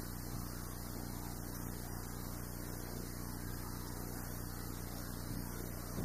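Steady low electrical hum with a hiss of background noise: room tone, with no distinct handling sounds standing out.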